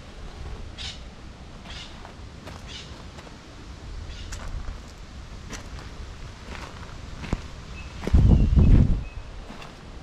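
Footsteps of a person walking, about one step a second, over a steady low rumble of wind on the microphone. A louder rush of wind comes about eight seconds in.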